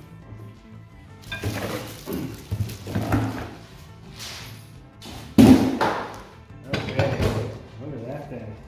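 An Earthwise 16-inch manual reel mower being pulled out of its cardboard box, with bursts of cardboard scraping and rustling. About five and a half seconds in there is a sudden loud thunk as the mower comes down on a table. Background music plays throughout.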